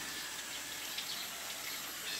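Steady outdoor background noise with a few faint, short bird chirps.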